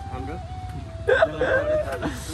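People's voices, with a sudden loud vocal outburst about a second in, over a steady low rumble.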